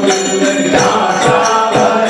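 Men singing a traditional Hindu devotional bhajan, voices sliding between held notes, over a steady percussive beat of about two strikes a second.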